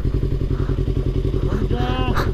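Motorcycle engine running while riding, a fast, even rhythm of firing pulses; a short voice comes in near the end.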